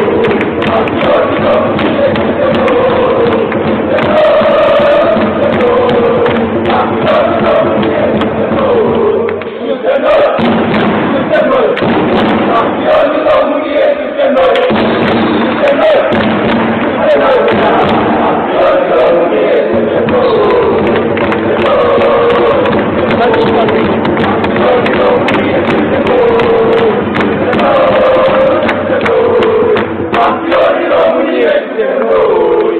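A crowd of handball supporters chanting and singing together in a reverberant sports hall, with thuds beating along, and a brief lull about ten seconds in.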